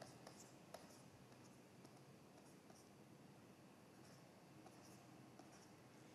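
Near silence with a few faint, scattered ticks of a stylus writing on a tablet, the clearest about 0.75 s in.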